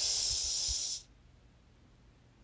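A person hissing through clenched teeth for about a second. The hiss then cuts off suddenly into silence.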